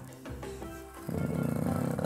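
Background music, with a felt-tip marker dragged along a ruler across a foam board during the second half, lasting about a second.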